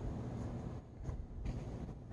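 A low, steady outdoor background rumble with no distinct event.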